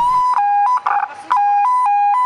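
Police vehicle siren flipping back and forth between a higher and a lower note, a short high note then a longer low one, over and over, with a brief break about a second in.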